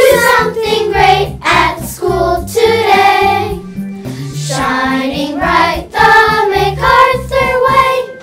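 Children singing a morning-show theme song over a backing track with a pulsing bass line.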